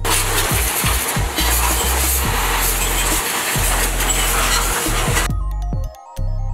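Pressure-washer water jet hissing steadily as it sprays a motorcycle's engine and frame, cutting off suddenly about five seconds in. Background music plays throughout.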